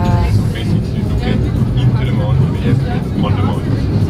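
Funicular car climbing the mountainside, a steady low rumble from the running car, with voices in the background.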